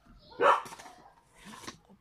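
A dog barking, with a short bark about half a second in and a quieter one near the end.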